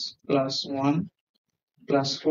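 Speech only: a voice talking in two short stretches with a brief pause between them, about a second in.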